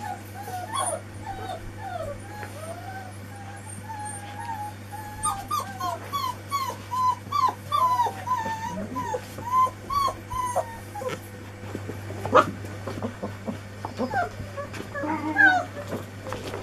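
Four-week-old Anglo Wulfdog puppies whimpering and yipping in a long run of short, high whines, thickest in the middle. There is a sharp knock about twelve seconds in.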